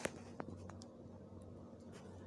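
Quiet room tone with a low, steady hum, broken by a sharp click at the very start and a few fainter clicks in the first second.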